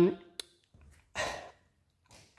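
The end of a spoken "um", a faint click, then a man's short breath about a second in, before a quiet pause.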